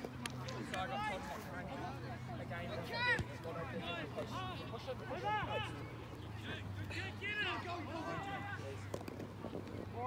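Distant voices of players and onlookers shouting and calling across an open sports field, in many short rising-and-falling calls over a low steady hum.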